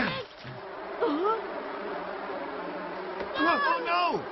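Swarm of disturbed bees buzzing steadily from a bee's nest that has just been kicked over, opening with a sharp hit. Brief yelping cries break in about a second in and again near the end.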